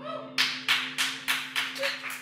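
An electric guitar's final chord rings on with echo while sparse hand-clapping starts about half a second in, around three claps a second: applause at the end of a song.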